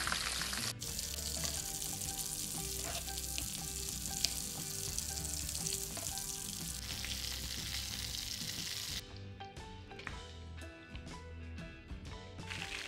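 Breaded fish sticks frying in hot oil in a pan: a steady sizzling hiss that drops away about nine seconds in, followed by a run of sharp clicks.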